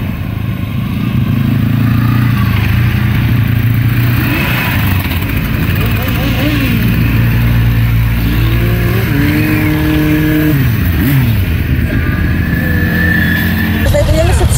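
A parade of motorcycles riding slowly past one after another, engines running steadily, with engine notes rising and falling as bikes go by.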